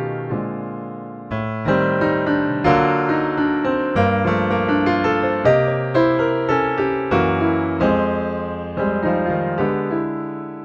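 Pianoteq's physically modelled Steinway Model D virtual piano playing a piece from a MIDI file: chords and melody notes struck in turn, each ringing on and fading.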